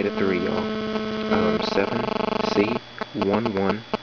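A steady electrical hum with a buzz of overtones, which cuts off suddenly near the end.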